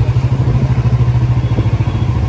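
Small motor scooter engine running steadily while riding at low speed, heard close up with a fast, even low pulse.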